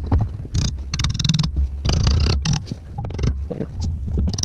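Gloved hands rubbing and handling a freshly welded steel bracket: irregular scraping and rustling bursts over a steady low rumble.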